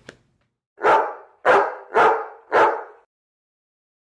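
A dog barking four times, about half a second apart, starting nearly a second in.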